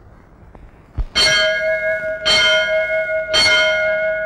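Hanging metal temple bell struck three times, about a second apart, each stroke ringing on with clear steady tones; a short low knock comes just before the first stroke.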